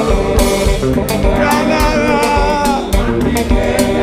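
Live gospel worship music: a singer's voice with a band and conga drums playing a lively, steady beat.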